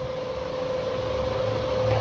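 Steady background hum and hiss with a faint constant tone, slowly growing a little louder.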